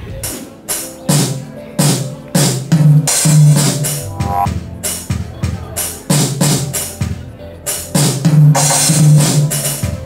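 Sampled drum-kit sounds played by a computer, each one triggered as a hand breaks a light beam over the sensors of a homemade virtual drum. The result is an uneven run of drum hits with low thumps, and a cymbal wash near the end.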